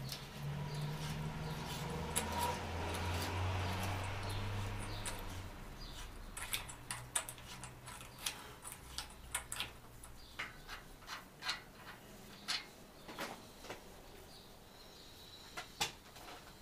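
Bicycle bottom-bracket parts and tools being handled: a low steady hum with a rubbing noise for the first few seconds, then a long run of light, irregular metallic clicks and clinks.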